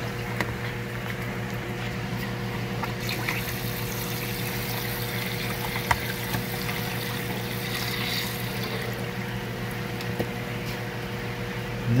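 Fresh water pouring steadily into a plastic tub of water, churning its surface, over a steady low hum.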